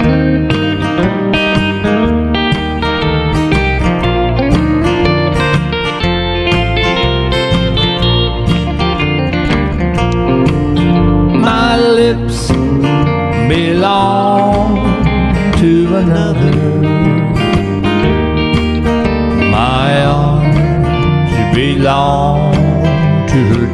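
Country song instrumental break: strummed acoustic guitar with an electric guitar playing a lead line of sliding, bending notes.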